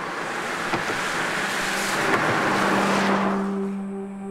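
A car passing on a wet road, its tyre hiss swelling and then fading. A low steady hum comes in about halfway.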